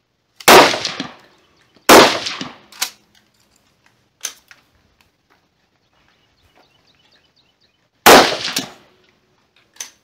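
Rifle shots on a firing line: two loud reports about a second and a half apart near the start, a third about eight seconds in, each with a short ringing echo. Fainter sharp cracks fall in between.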